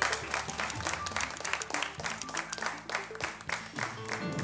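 Studio audience applauding, with music playing underneath; the music's low notes change about two seconds in.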